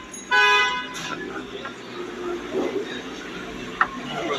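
A car horn sounds once, a steady blast of under a second just after the start, over street background noise.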